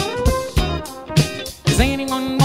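Background music: a guitar-led song over a steady drum beat.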